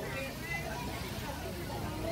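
Quiet pause: faint distant voices over a low, steady background rumble.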